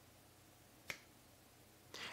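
Near silence with one short, sharp click a little under a second in.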